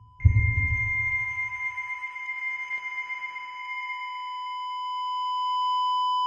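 The close of a rock track: a last low band hit that dies away over about two seconds, under a steady, high electronic tone that holds one pitch and grows louder toward the end.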